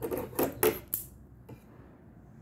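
A pair of large metal tailor's shears picked up off a table and handled: a quick run of three or four sharp metal clicks and clacks in the first second, then one faint click.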